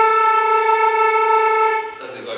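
Concert flute holding one steady, sustained A (around 440 Hz) for nearly two seconds, then stopping shortly before the end.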